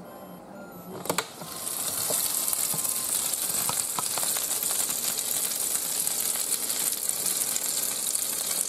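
A click about a second in, then freshly air-fried chicken wings sizzling in the hot wire basket, a steady crackling hiss with a few small pops.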